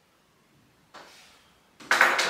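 Very quiet room with one soft, brief knock about a second in, then a man's voice starting right at the end.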